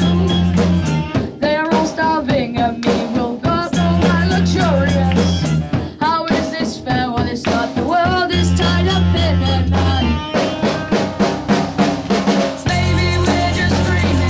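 A young rock band playing live: a boy's lead vocal over drum kit, electric guitar and bass guitar. Long held bass notes return every few seconds.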